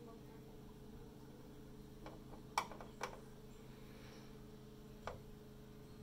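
Trapped air burping up out of a motorcycle fuel tank filled with Metal Rescue rust remover: a few short gloops, the loudest about two and a half seconds in and another near the end. These are pockets of air escaping from the top of the tank, a sign that it is not yet completely full. A steady low hum runs underneath.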